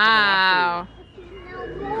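A young child's voice calling out one long, drawn-out "nooo" that breaks off under a second in, then a quieter pause before a short "no" near the end.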